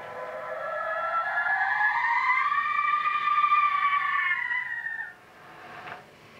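A single long pitched tone in the soundtrack music. It glides slowly upward for about two and a half seconds, holds high, then drops away abruptly about five seconds in.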